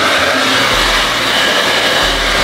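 Handheld hair dryer blowing steadily at full speed, drying freshly washed hair. A loud, even rushing sound.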